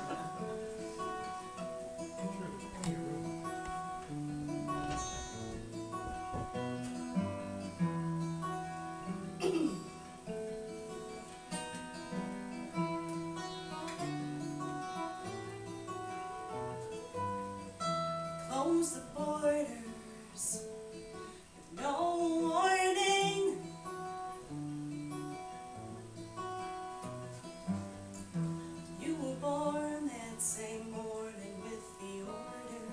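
Two acoustic guitars finger-picking a song's intro, with a singing voice coming in briefly in the second half.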